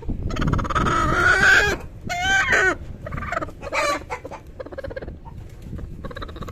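Chickens calling: a long pitched call rising as it goes, lasting about a second and a half, then a shorter call around two seconds in and another brief one near four seconds.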